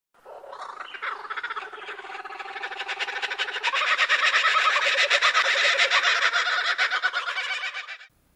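A flock of birds squawking and calling, many calls overlapping in a dense chatter that grows louder about halfway through and cuts off suddenly at the end.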